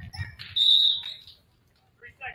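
A referee's whistle blows once: a single shrill, steady blast of about half a second, starting about half a second in. It stops play, and the game clock halts.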